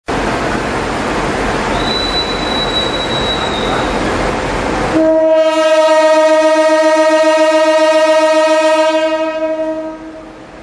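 CC 201 diesel-electric locomotive running with a loud, noisy rumble, then sounding its horn about halfway through: one long steady blast of about four and a half seconds that fades near the end.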